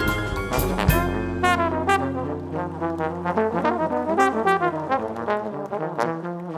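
Live traditional jazz band with two trombones, piano, upright bass and drums. A piano passage with drums ends on an accented band hit about a second in, then the two trombones play together over a held low note.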